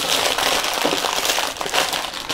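Glossy plastic mailing bag crinkling and rustling as hands handle it and pull a cardboard box out of it, in a steady run of crackle.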